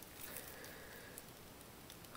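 Near silence: faint room noise with a couple of light ticks.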